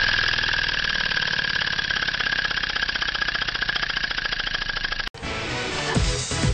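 A Briggs & Stratton 200cc engine converted to a steam engine, running fast on compressed air. It gives a rapid, even train of exhaust pulses with a steady high whistle, and the sound eases slowly as the air tank runs down. About five seconds in, the sound cuts off suddenly and background music begins.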